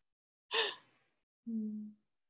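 A woman's short breathy sigh, followed near the end by a brief closed-mouth hum.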